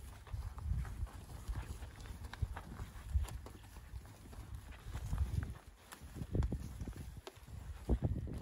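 A small herd of Angus heifers moving about in a dirt pen: irregular hoof steps and knocks with low thumps as they shuffle and walk off.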